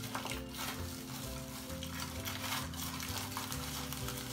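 Aluminium foil crinkling and plastic gloves rustling as gloved hands fold and squeeze a foil packet around a section of hair being bleached, with irregular crackles.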